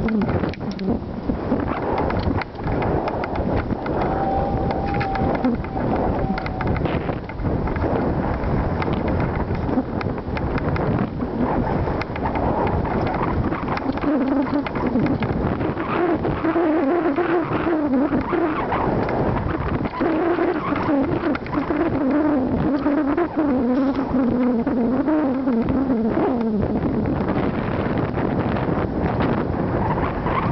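Mountain bike riding over a rough dirt singletrack, with a steady noise of rattles and knocks as the camera is jolted. A wavering pitched tone, like humming or faint music, runs through the middle and latter part.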